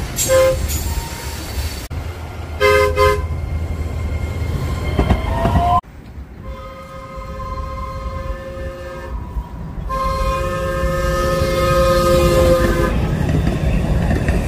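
Horns of DART SLRV light rail trains: two short blasts in the first three seconds, then, after a cut, two long blasts of a chord of several notes, with the low rumble of the train running underneath.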